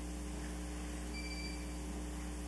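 Steady electrical mains hum with faint hiss in an open microphone feed. About a second in, a single short, faint, high electronic beep sounds for just over half a second.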